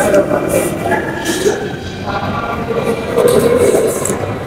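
Background music mixed with indistinct chatter in a busy public hall.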